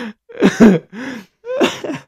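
A man laughing in about four short, throaty bursts that come close to coughing.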